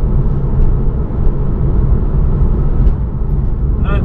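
Porsche 911's flat-six engine and tyre noise at steady cruising speed, heard from inside the cabin as a continuous low drone.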